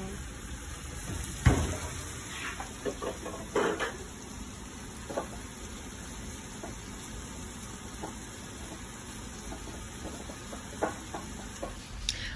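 Steak sizzling steadily in a frying pan, with a sharp click about a second and a half in and a few small clicks later from hands working the foil and wire cage on a champagne bottle.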